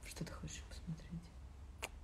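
Quiet whispered, murmured speech in a few short bits, then a single sharp click near the end.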